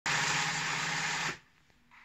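Industrial flatbed sewing machine running at speed, stitching a binding strip onto fabric, then stopping suddenly a little over a second in.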